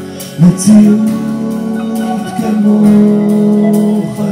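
Live band playing: acoustic guitar, electric bass and electric guitar, with a voice singing long held notes that slide from one pitch to the next. A loud accent about half a second in.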